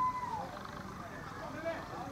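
A player's long shout across a cricket field, rising and then falling in pitch, right after the ball comes off the bat; fainter calls follow near the end.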